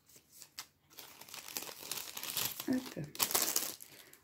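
A packet of paper tags being opened and handled: irregular paper-and-packaging rustling that builds to its loudest about three seconds in.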